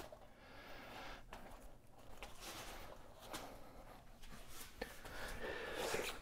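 Faint rubbing with a few soft clicks, from a rubber mountain-bike tyre being pushed by hand onto its rim over a tight CushCore foam insert.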